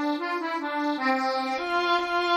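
Computer notation-software playback of a single-line Arabic melody on a synthesized accordion, stepping through short notes; about one and a half seconds in, the line passes to a synthesized violin.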